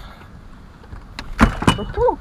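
Two sharp knocks against the aluminium boat, about a second and a half in and again just after, as a large northern pike is handled and hoisted up.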